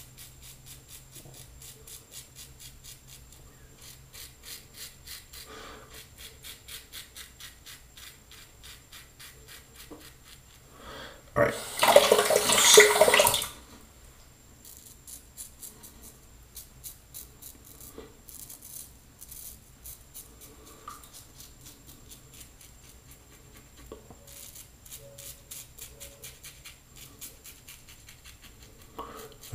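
Double-edge safety razor scraping through lathered stubble on the neck, a steady run of faint, rapid scratchy strokes. About eleven seconds in, a tap runs with a loud hiss for about two seconds as the razor is wetted, then the faint shaving strokes resume.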